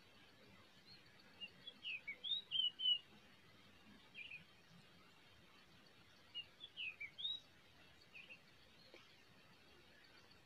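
A bird calling in two bursts of short, sliding high chirps, the first about two seconds in and the second about seven seconds in, with a couple of brief notes between, over faint outdoor background noise.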